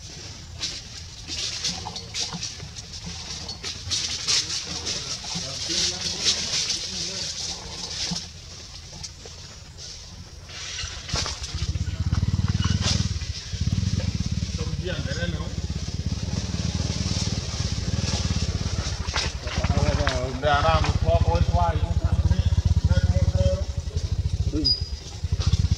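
A high steady hiss with scattered clicks, then from about halfway a loud, low, steady motor-vehicle engine rumble. Brief wavering calls come near the end.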